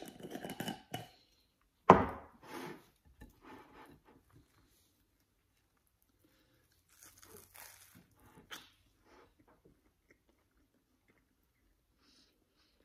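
The lid is screwed onto a glass mason jar, and the jar is set down on a wooden table with one sharp knock about two seconds in. Later, bites into a toasted sandwich give a short run of crunching and chewing.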